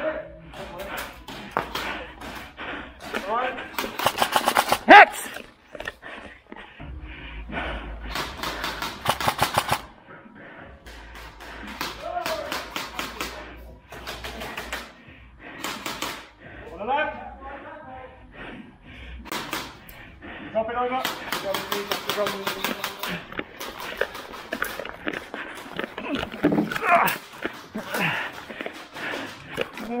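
Airsoft guns firing several rapid bursts of evenly spaced sharp snaps, each a second or two long, with players' voices calling out between them.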